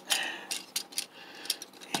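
Small plastic Transformers Cyberverse Bumblebee action figure being transformed by hand: a string of irregular light plastic clicks as its joints and parts are moved and pushed into place.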